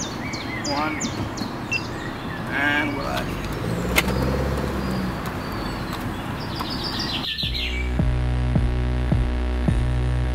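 Birds chirping and singing over outdoor ambient noise; about seven seconds in, background music with a steady beat cuts in.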